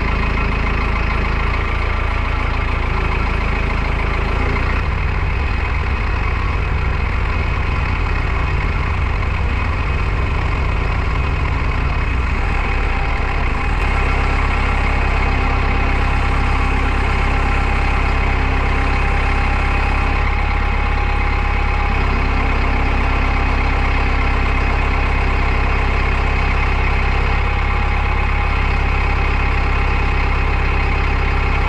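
Tractor engine running steadily to drive a hydraulic post hole auger boring into dry soil. The engine's tone shifts about halfway through.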